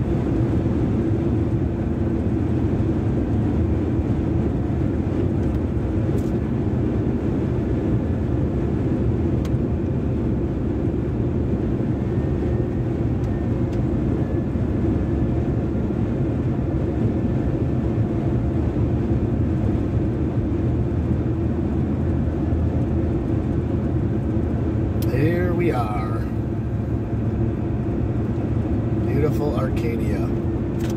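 Steady road and engine noise heard inside a truck's cab while driving at highway speed.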